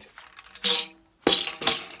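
Metal jingles of a tambourine clinking and rattling as it is lifted and set down, in two short bursts about half a second apart.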